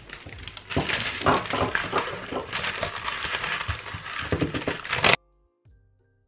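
Sheet of paper crinkling and crackling loudly as it is folded around a block of surf wax, stopping abruptly near the end.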